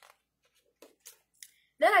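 A page of a picture book being turned by hand: a few faint, short paper rustles and taps, then a woman's voice begins near the end.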